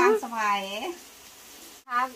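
Pork sizzling on a Thai mu kratha grill pan as it is turned with tongs, faint under a woman's voice at first and clearer once she stops. The sound cuts off suddenly near the end.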